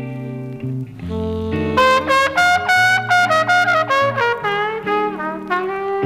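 Jazz record played from a vinyl LP: a trumpet leads with a run of bright, short notes over bass and band, getting louder about two seconds in.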